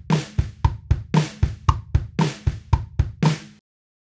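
GarageBand virtual drummer (the Logan drum kit) playing back its more complex pattern: kick, snare and hi-hat at about four hits a second, with cymbal splashes roughly once a second. It cuts off abruptly shortly before the end.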